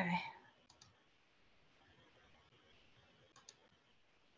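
Faint computer mouse clicks in near silence: a quick double click about a second in and another near the end, as a screen share is restarted.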